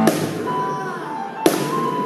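Live two-piece band music: a heavy drum and cymbal hit at the start and another about a second and a half in, each ringing on over sustained keyboard chords.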